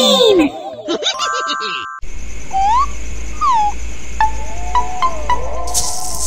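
Cartoon background music: a brief run of chiming, stepped tones, then, after a sudden break about two seconds in, a slow tune of gliding notes over a low drone, with short plucked notes spaced about every half second.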